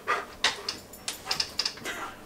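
A dog close by making a handful of short, irregular sounds, with brief gaps between them.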